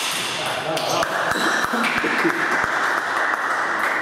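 Sharp knocks on the wooden parquet floor between table tennis rallies, five or so at irregular spacing from about a second in. Under them are a steady rushing noise and voices in the hall.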